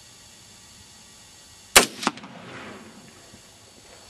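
A single shot from an AR-15 rifle in .223 Remington firing 55-grain Hornady V-Max varmint rounds: one sharp, loud crack a little under two seconds in, a second, weaker crack about a third of a second later, then a short fading echo.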